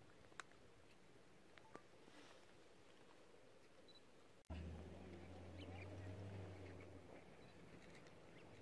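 Near silence: faint outdoor room tone with two faint clicks in the first two seconds, then a low steady rumble that starts abruptly about four and a half seconds in and fades about two and a half seconds later.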